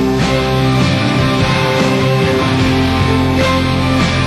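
Rock band playing live with guitars strumming to the fore over bass, in an instrumental passage without vocals.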